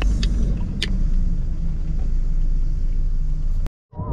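A van's engine and road rumble heard from inside the cab while driving and accelerating, a steady deep drone with a couple of faint clicks. It cuts off suddenly near the end.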